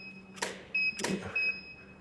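Two studio shots in quick succession: each a short sharp click of the camera firing the Profoto D2 flash, followed a moment later by a brief high beep, the flash head's ready signal after recycling.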